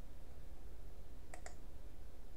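A computer mouse button clicked once, press and release about a tenth of a second apart, about one and a half seconds in, over a steady low hum.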